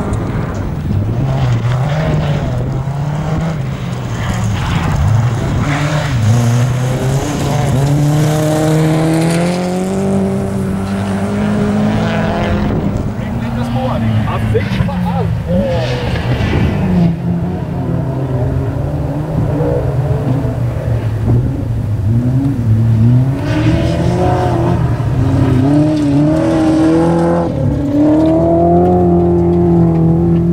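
Rally car engine revving hard and changing gear as it drives a gravel stage, its pitch climbing, dropping and stepping over and over through the corners, with gravel spray under the tyres.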